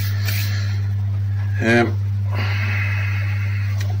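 A steady low hum runs throughout, with a brief voiced sound from a man a little under two seconds in.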